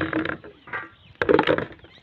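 Soot-blackened metal cooking pots being handled on a wooden bench: a short cluster of knocks and clatter about a second and a quarter in.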